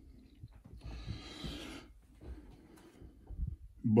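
A person breathing out once, a soft breath lasting about a second, with a few faint low bumps of the camera being handled.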